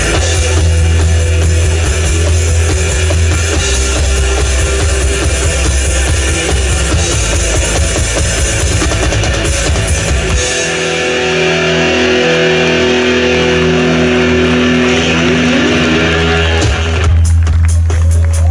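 Live pop-rock band playing through a festival PA, with a drum kit, guitar and deep bass. About ten seconds in the bass and drums drop away, leaving held chords, then come back in with a burst of drum hits near the end.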